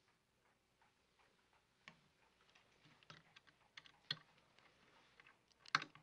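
Faint, irregular small clicks of a lock mechanism being worked by hand, fingers probing a lock set in a wooden cabinet door. The clicks start about two seconds in and come more often later, with the loudest near the end.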